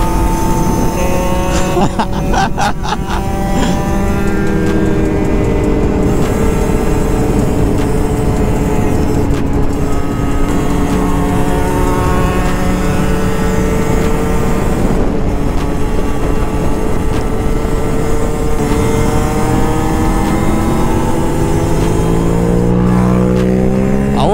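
Small-displacement 50cc two-stroke motorcycle engine running hard under way. Its pitch sags slowly through the middle and climbs again near the end as it accelerates, over a constant low rumble of wind on the microphone.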